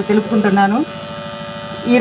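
A voice speaking Telugu stops just under a second in, leaving a steady electrical buzz with a constant hum tone until speech starts again at the very end.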